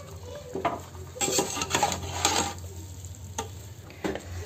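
Metal ladle stirring and scraping a thick, ghee-soaked mix of roasted mung-bean flour against the sides and bottom of an aluminium pot in a series of irregular strokes, with a light sizzle from the hot ghee.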